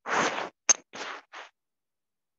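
Scratchy rubbing noises picked up by a microphone: four short scratches within about a second and a half, the first the loudest, with a sharp click between the first and second.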